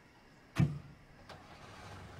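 A car door shuts with one heavy thump about half a second in, followed by a fainter click and then a low steady hum.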